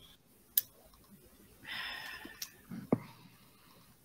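A few sharp clicks, the loudest near the end, and a short breathy hiss like an exhale close to the microphone a little past halfway.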